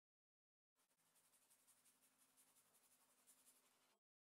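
Faint scratchy rasping of a sanding block rubbed in quick, repeated strokes over a painted wooden table top. It starts about three-quarters of a second in and cuts off suddenly at the end, with a faint low hum underneath.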